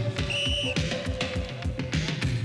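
Upbeat theme music with a fast, steady drum beat and a held note, with a short high whistle blast lasting about half a second near the start.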